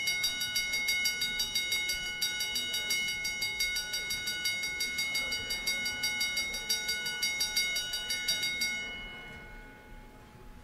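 Chamber voting bell ringing with a rapid, even pulse, signalling that the voting machines are unlocked and the vote is open. It stops about nine seconds in and its ring fades away.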